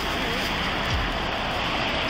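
Steady rushing noise on a police body camera's microphone, with a faint voice fragment near the start.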